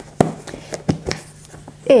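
Hands opening a magnetically closed cardboard advent calendar box: a sharp click shortly after the start as the magnetic flap comes apart, then a few lighter taps and handling sounds of the cardboard.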